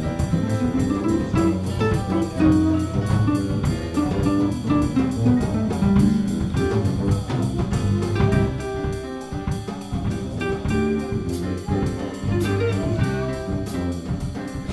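Small jazz combo playing: archtop electric guitar, digital piano, bass and drum kit, with a steady cymbal pulse of about four strokes a second over moving piano and bass lines.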